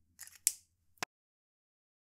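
Faint handling rustles and two short sharp clicks, about half a second and a second in, as the pens and caps are handled at a plastic digital kitchen scale.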